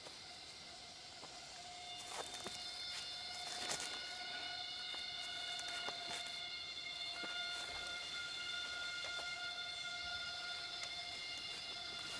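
Film soundtrack of a jungle scene: several steady high tones held together, with another tone coming in about seven seconds in, over faint scattered clicks. It grows slowly louder over the first few seconds.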